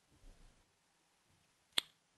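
Near silence, then a single sharp click near the end.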